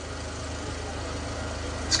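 A steady low mechanical hum, like a running engine, under an even wash of background noise. A man's amplified voice starts again right at the end.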